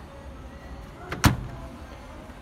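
Front-loading Hotpoint washing machine door being shut: a small click, then a single sharp clunk just over a second in.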